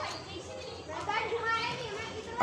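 Faint, distant voices of children and young men calling out while playing street cricket.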